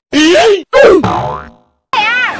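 Edited-in comic sound effect: two loud springy, boing-like sounds with sliding pitch, the second gliding down and fading about halfway through.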